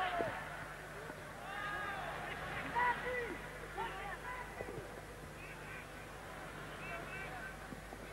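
Faint, scattered shouts and calls from players and a sparse crowd at a football match, over a steady low hum in the old broadcast audio.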